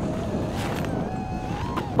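Racing quadcopter's brushless motors whining in flight, the pitch drifting up and down with the throttle, over a rush of wind on the onboard camera's microphone.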